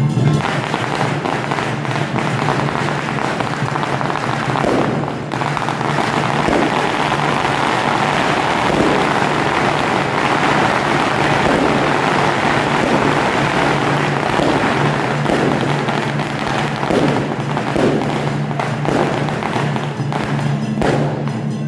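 A long string of firecrackers going off in a dense, continuous crackle that lasts throughout.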